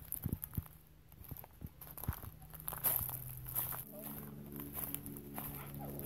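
Footsteps crunching through dry leaf litter, irregular and scattered over the first few seconds. A steady low hum with several tones sets in about four seconds in and holds.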